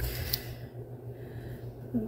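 Kitchen knife slicing through a round baked sponge cake layer, faint and soft, over a steady low hum, with one small click about a third of a second in.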